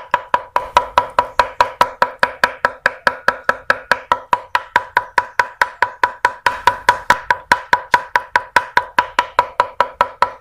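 Meat cleaver rapidly mincing raw beef mixed with chili paste on a round wooden chopping block for laab. Steady, even strokes at about five a second, each with a short metallic ring.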